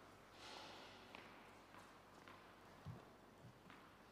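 Near silence of a tennis court between points: faint ticks about twice a second and a single low thump shortly before the end.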